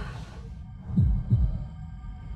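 Trailer sound effect of a heartbeat: one low double thump about a second in, with a faint steady high drone underneath.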